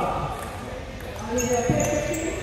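Table tennis play in a large hall: a sharp knock of a ball being struck, about three-quarters of the way in, over people talking in the background.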